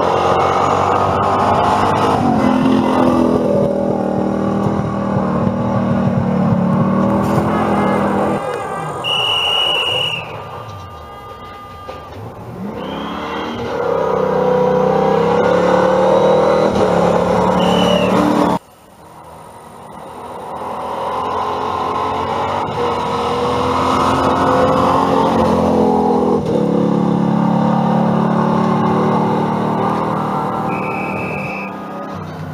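Rally cars driving at speed on a gravel stage, engines revving up and down through the gears as they approach and pass. The sound drops off abruptly about two-thirds through, then another car's engine builds again. A few short high chirps are heard in the middle.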